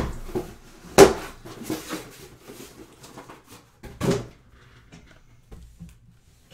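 Handling noise on a desk: a few sharp knocks, the loudest about a second in and another about four seconds in, with small scattered clicks between them and quieter clicks near the end.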